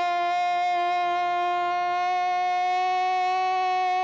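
A football radio commentator's long, drawn-out goal cry ("goool"), one loud high note held steady without a break.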